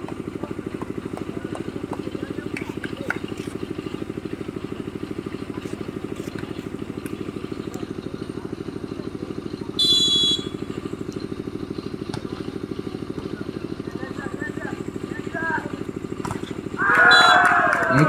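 A referee's whistle gives one short blast about halfway through, over a steady, evenly pulsing low engine drone.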